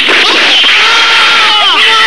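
A man's loud, long scream of pain that starts abruptly, is held on one pitch, and drops in pitch near the end.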